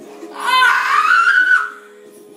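A young woman's high-pitched squeal, held for about a second and rising a little in pitch, as water is poured from a bottle into her open mouth.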